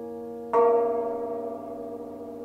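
Cimbalom chord ringing and fading, then a new chord struck with the hammers about half a second in, its strings left undamped to ring on and slowly die away.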